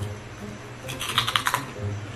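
Close-up crunching of crispy chicharron (fried pork rind) being bitten and chewed: a quick run of crackles about a second in, lasting about half a second.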